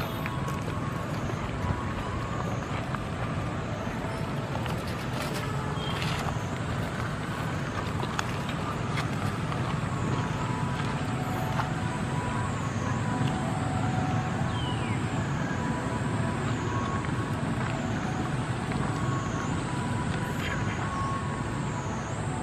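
Steady outdoor background rumble of distant road traffic. In the second half a thin, high wavering tone dips and recovers about once a second.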